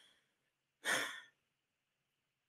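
A man's single audible breath, a short sigh-like rush of air about a second in, taken during a pause in a spoken-word recitation.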